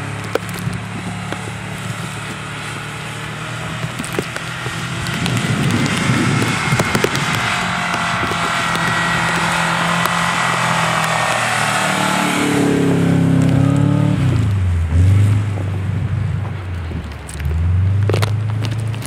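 Subaru DL wagon's EA82 flat-four engine revving up and down as the car spins donuts in the snow, with the noise of the wheels churning through snow. The revs climb and fall several times, with a sharp dip near the middle.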